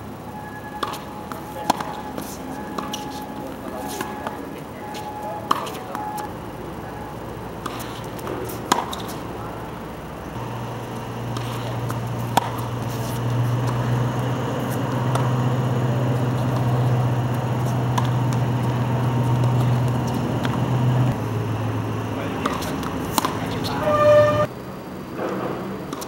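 Tennis ball struck by racquets in a rally, sharp pops several seconds apart, the first one a serve. A steady low hum comes in about ten seconds in and stops about ten seconds later.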